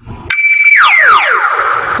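Electronic slide-animation sound effect: a steady high tone held for about half a second, then several pitches sliding downward together and trailing off into a noisy wash.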